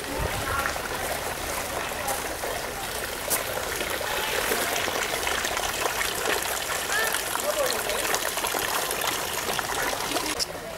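Steady trickling, running water, with faint voices in the background.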